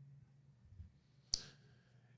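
Quiet room with a single short, sharp click a little past halfway.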